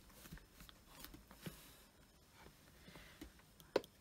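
Quiet handling sounds of a large background stamp being pressed by hand onto cardstock in a stamp-positioning tool, with faint scattered taps and rustles, then one sharp click near the end as the stamp is lifted off.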